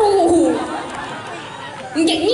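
Speech only: a voice over the microphone drawn out on a falling pitch for about half a second, then softer crowd chatter.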